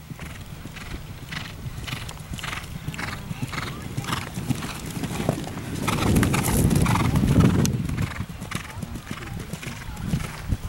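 An event horse's hoofbeats in a steady rhythm of about two a second, loudest from about six to eight seconds in.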